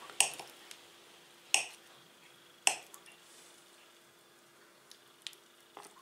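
Knife cutting through soft butter and knocking against the bottom of a glass bowl: three sharp clicks in the first three seconds, then a few fainter ticks near the end, over a faint steady hum.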